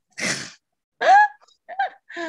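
A person laughing: a breathy burst of air, then two short voiced laughs about a second in.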